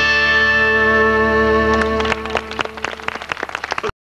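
A country band's final chord, played on guitars, held and ringing, then dying away after about two seconds. Short, sharp, irregular hits follow, and the sound cuts off abruptly just before the end.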